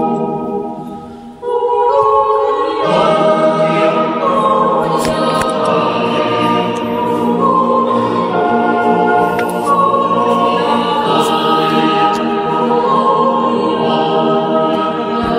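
Mixed yodel choir singing unaccompanied in close harmony, holding chords that change every second or two. A phrase dies away about a second in, and the next begins half a second later, ringing in the church's echo.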